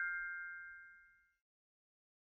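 Fading tail of a bright, bell-like ding sound effect from the logo sting: two clear ringing tones dying away, gone about a second and a half in.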